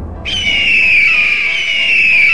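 Hawk screech sound effect: a loud, high-pitched cry starting about a quarter second in and falling in pitch twice, over intro music.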